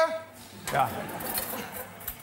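A short spoken word, then low background chatter with the light clatter and clink of plates and cutlery in a studio kitchen.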